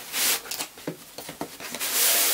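Fabric tote bag rustling and scraping against a cardboard box as it is pulled out, in short irregular bursts with a few light knocks.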